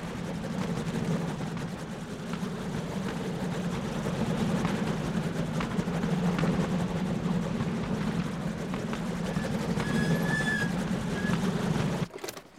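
Indy car engine running steadily at low revs, a low drone that builds slightly and then holds. A brief high-pitched whine comes in near the end.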